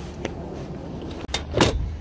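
A small click, then a louder short clunk with a brief rush of noise near the end, over a steady low rumble.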